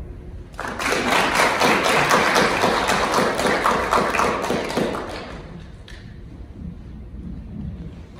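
Audience applauding: many hands clapping, starting about half a second in and dying away after about five seconds.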